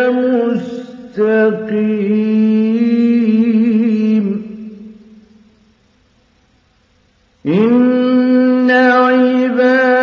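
A solo male voice reciting the Quran in the ornate mujawwad style, with long held notes and wavering ornaments. The phrase trails off with reverberation about four seconds in into a pause of about two seconds. A new phrase then begins, sliding up into another long held note.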